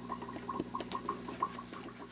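Aquarium sponge filter bubbling: a quick, irregular run of small bubble plops, several a second, over a steady low hum, with a few light clicks.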